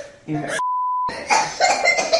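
Broadcast censor bleep: a single steady beep tone about half a second long, starting about half a second in, that replaces a spoken word between stretches of speech.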